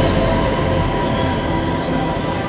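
Projection-mapping show soundtrack over loudspeakers: a low rumbling sound effect that slowly fades, with the last held tones of the music dying away under it.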